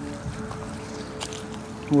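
A faint steady hum with a single light click about a second in.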